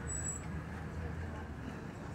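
Steady low hum of vehicle traffic and engines around a parking lot, with a brief faint high-pitched tone shortly after the start.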